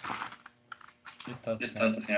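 A short run of computer keyboard typing, a few quick key clicks, with a person's voice starting up about two-thirds of the way in.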